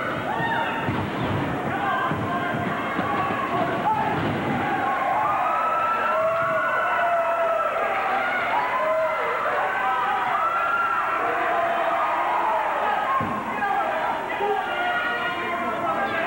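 Wrestling crowd yelling and shouting, many voices overlapping, with long drawn-out high calls and no clear words.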